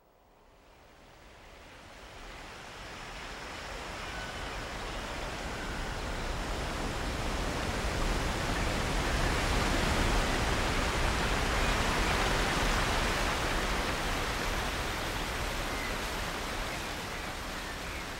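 Rushing water of a waterfall and churning whitewater: a steady rush that fades in from silence over the first few seconds and is loudest around the middle.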